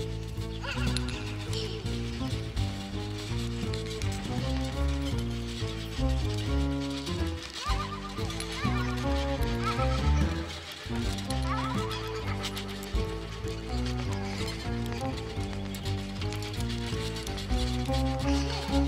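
Music: a violin playing quick-changing notes with sliding glissandi, over a low bass line, in an improvised contemporary-jazz style.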